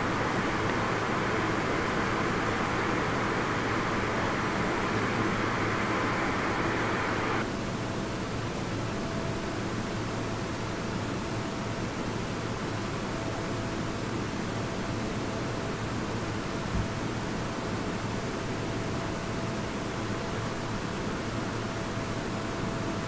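Steady noise of a parked jet airliner running on the apron, a hiss over a low hum. About seven seconds in the hiss drops away abruptly, leaving a quieter hum with a faint steady whine.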